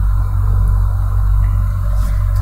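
Steady low hum with a fainter hiss over it.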